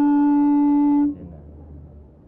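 A single loud, steady held musical note with rich overtones that cuts off suddenly about a second in, followed by faint background noise.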